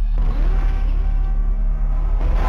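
Title-sequence sound effects: a deep steady rumbling drone, joined just after the start by a rising, noisier swell with sweeping tones.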